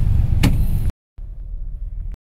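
Steady low rumble inside a Honda Jazz's cabin, with one sharp click about half a second in. The sound cuts to dead silence twice, briefly, and is quieter after the first gap.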